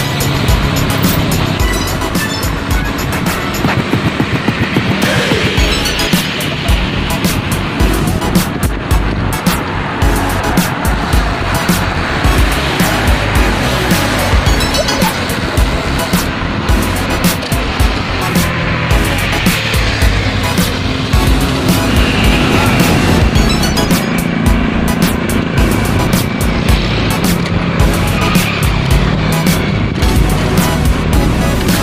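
Background music with a steady beat, with road traffic noise beneath it.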